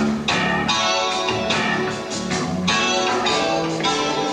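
A live band playing a song with a steady beat: chords on keyboards over a drum kit.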